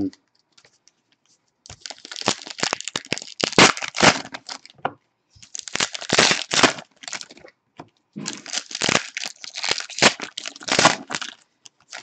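Foil trading-card packs of 2015-16 Panini Revolution basketball crinkling and being torn open by hand, in three spells of crackling after a silent first second or two.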